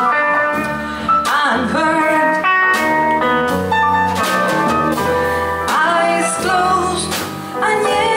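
Live jazz band music: a bass line on acoustic bass guitar with piano and drums, and a woman's voice sliding between notes without clear words.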